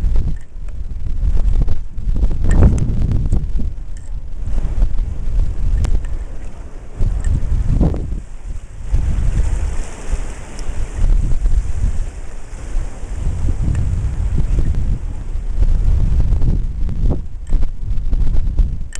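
Loud wind buffeting the microphone in uneven gusts, over the wash of ocean surf surging into a rocky tide pool.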